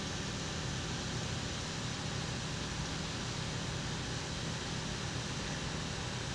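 Steady, even hum and hiss of a Chevrolet Malibu hybrid running, with its engine turning and its fans on, heard from inside the cabin.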